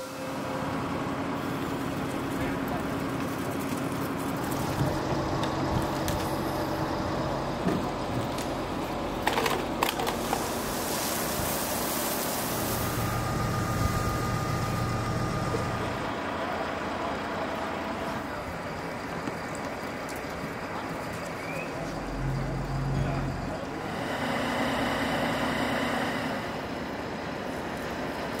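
Street sound at a car fire scene: a fire engine's motor running steadily, with people talking in the background and a few knocks about nine to ten seconds in.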